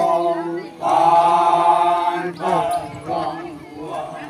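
A group of men chanting together in unison. One long held note runs from about a second in, with shorter phrases after it.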